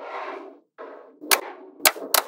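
Slabs of small magnetic balls sliding and rolling across a tabletop with a gritty rasp, twice, then two sharp clicks as the magnetic pieces snap together in the second half.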